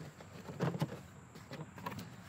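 Cardboard shipping box being opened by hand: the flaps are pulled up with a few faint, irregular scrapes and rustles of cardboard.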